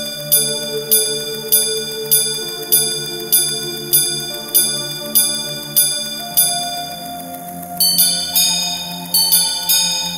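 Gongs of a Patek Philippe repeater watch being struck: about a dozen evenly spaced single chimes, roughly one and a half a second, then quicker chimes in pairs near the end, over a soft sustained music bed.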